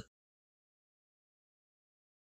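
Silence: a blank gap in the soundtrack at a cut between segments.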